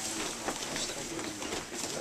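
Low, indistinct voices of people in the room, with scattered light knocks and rustles.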